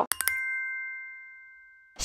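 A chime sound effect: a couple of quick clicks, then a single bright ding that rings on and fades away over about a second and a half.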